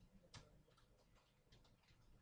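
Near silence: room tone with faint, irregular small clicks, one a little louder about a third of a second in.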